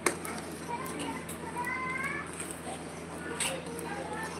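Metal ladle knocking against a steel pan on a wood-fired clay stove, with a sharp clink just after the start and another about three and a half seconds in. Children's voices carry in the background.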